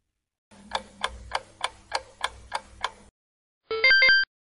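Ticking-clock countdown sound effect, about three or four ticks a second for some two and a half seconds, followed near the end by a short bright chime marking the correct answer being revealed.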